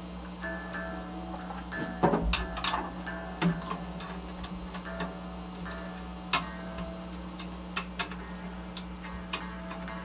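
Quiet, sparse live band sound in a small room: a steady low hum under short soft guitar notes, with scattered light ticks and taps on the drum kit. The loudest knocks come about two seconds and three and a half seconds in.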